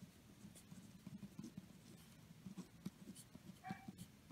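Pen writing on paper, faint scratching strokes of handwriting, with a short faint tone near the end.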